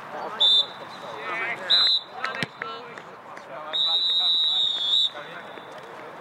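Referee's whistle blown three times for full time: two short blasts, then one long blast of about a second and a half. Players' voices shout between the blasts, and there is a sharp knock about halfway through.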